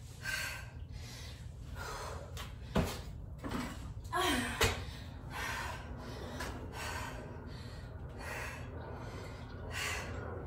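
A woman breathing hard and fast from exertion mid-workout, with a short voiced gasp near the middle. Two sharp knocks, one a little under three seconds in and one a little over four and a half, are the loudest moments.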